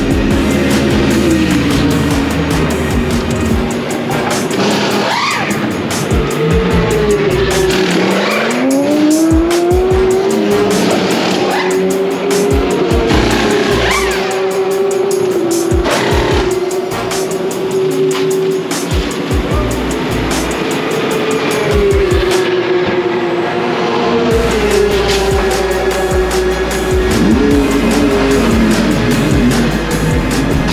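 Race car engines in the pit lane, their pitch rising and falling, with many short sharp bursts as the crew changes tyres during a GT3 pit stop. Background music plays underneath.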